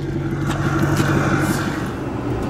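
Steady low hum of a diesel vehicle's engine idling, heard from inside the cab, with constant droning tones.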